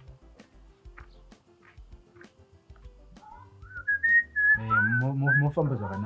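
A person whistling a short tune that steps up and down in pitch, starting about halfway in, with a voice speaking over the last part of it.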